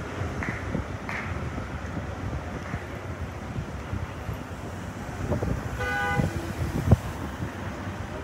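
Street traffic noise with wind on the microphone, and a short, flat-pitched car horn toot about six seconds in, followed by a single sharp knock.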